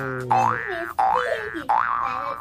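Cartoon-style comedy sound effect: a long falling tone that fades out about half a second in, overlapped by three quick rising whoops about two-thirds of a second apart.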